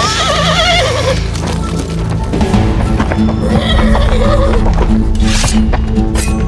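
A horse whinnies loudly, a quavering neigh of about a second, and gives a shorter whinny about four seconds in, over background music with a steady low pulse.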